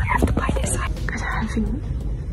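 Hushed, whispered speech over background music.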